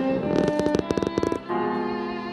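Live classical duo of violin and piano playing. A rapid run of short, sharp-attacked notes comes about half a second in, followed by a new held violin note from about a second and a half.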